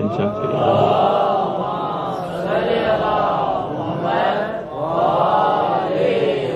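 A man chanting into a microphone in about four long melodic phrases, his pitch rising and falling in slow arcs.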